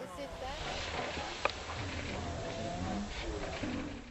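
Field sound of a pack of African wild dogs mobbing an impala kill: a fairly quiet, steady rush of noise with faint, brief high-pitched calls and one sharp click about one and a half seconds in.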